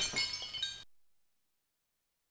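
Mirror glass shattering: the tail of the crash, with shards tinkling and clinking a few times before dying away within about a second.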